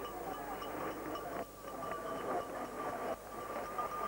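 Trackside ambience from a cross-country ski course: a steady, moderately quiet wash of outdoor noise, with a thin steady tone running under it.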